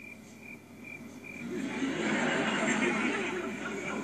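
A sitcom studio audience laughing, swelling up about a second and a half in and carrying on to the end, heard through a television's speaker. Before the laughter there are faint, evenly repeated high chirps.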